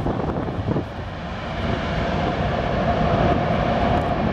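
Airbus A380's four jet engines at high power during its takeoff roll: a loud, steady roar with a whine that grows louder from about halfway through.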